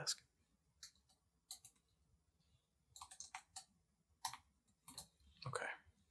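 Faint, close-miked mouth clicks and lip smacks, scattered and irregular, a few at a time with a small cluster around the middle. A brief soft voice sound comes near the end.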